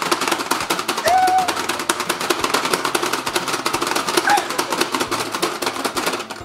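Rapid, continuous clicking of the plastic buttons on a Pie Face Showdown toy as two players hammer them, stopping right at the end. Short vocal squeals come through at about one second and again about four seconds in.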